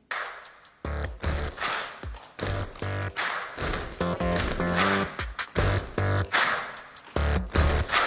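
Recorded upbeat song with a strong steady beat and deep bass, played over loudspeakers, cutting in suddenly at the start.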